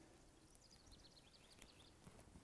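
Near silence, with faint high bird chirps.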